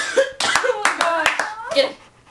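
Girls' voices, not clear words, with a few sharp clap-like smacks about a second in.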